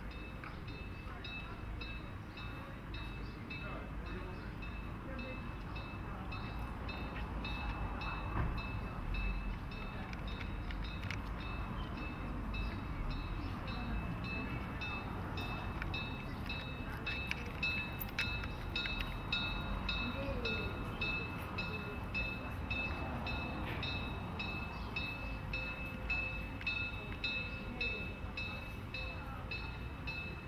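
The Molli narrow-gauge (900 mm) steam locomotive approaching along street-running track, its sound slowly growing louder, with an evenly repeated ringing throughout. Passers-by chat in the background.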